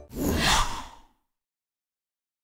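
A short whoosh sound effect on the animated logo ident, swelling up and fading out over about a second.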